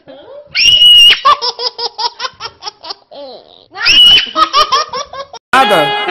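Loud, high-pitched laughter in two bouts, each starting with a shrill shriek and breaking into rapid ha-ha pulses, about six a second. Music starts near the end.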